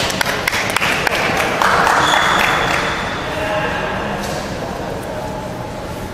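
Badminton being played in a large gym hall: a quick cluster of sharp taps and knocks in the first second, then a brief noisy burst about two seconds in, with faint voices after.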